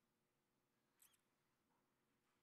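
Near silence: faint room tone with a steady low hum, and one brief, faint high-pitched squeak that falls in pitch about a second in.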